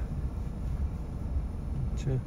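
Low, steady rumble of a car running, heard from inside the cabin.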